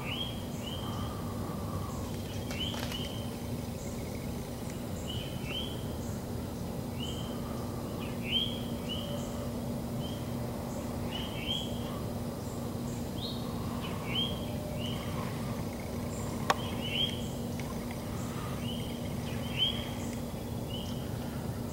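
Woodland ambience: short chirping calls repeating every half-second to second throughout, over a steady low hum, with one sharp click about three-quarters of the way through.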